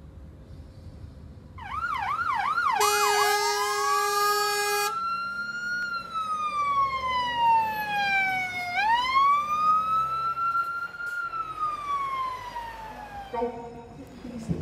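Emergency vehicle siren, loud from about two seconds in. It starts as a fast yelp, about three sweeps a second, then a steady blaring tone for about two seconds, then a slow wail that rises and falls twice, ending in a short steady tone.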